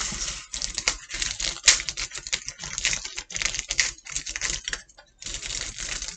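Aluminium foil crinkling and rustling under a pizza as hands tear the pizza apart, an irregular run of crackles with a brief pause about five seconds in.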